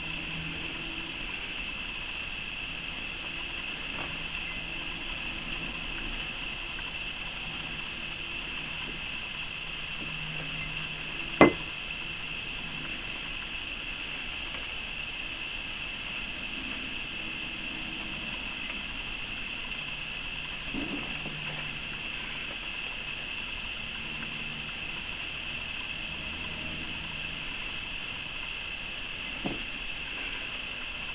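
Steady, high-pitched drone of night insects such as crickets or katydids, with a single sharp knock about a third of the way through.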